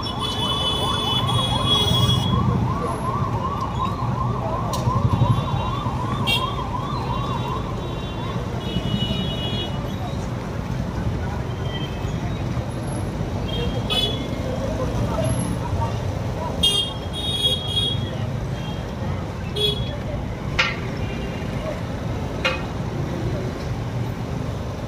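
Police vehicle siren in a rapid yelp, its pitch sweeping up and down about two to three times a second, fading out about eight seconds in, over street traffic noise and voices.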